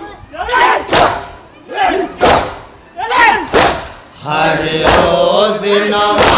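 A group of men chanting a noha together, punctuated by unison open-hand slaps on the chest (matam) about once a second. From about four seconds in, the voices hold a long sung line together.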